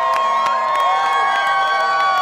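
A crowd cheering and whooping, many voices holding long high shouts together, with scattered sharp clicks.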